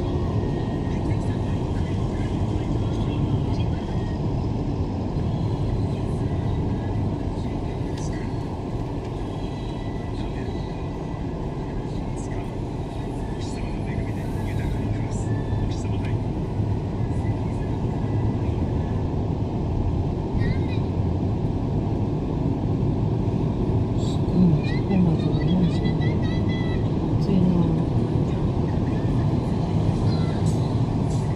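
Steady road and engine rumble heard from inside a moving car's cabin at highway speed, with quiet talk from people in the car, clearest near the end.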